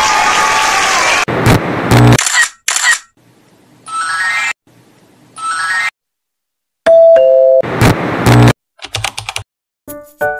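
Stock intro sound effects: a loud sweep at the start, then two quick rising chime runs, a two-note ding-dong chime about seven seconds in, and several sharp clicks, the kind of sounds that go with a subscribe-and-notification-bell graphic.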